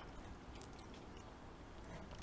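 Quiet room tone with one short, faint click about half a second in.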